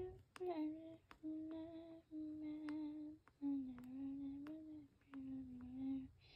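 A voice softly humming a slow tune in a string of held notes with short breaks between them. The pitch dips lower in the middle.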